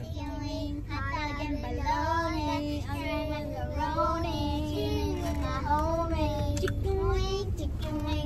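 A child singing a wordless 'da da da' tune in held, gliding notes, with the low rumble of the car's road noise underneath.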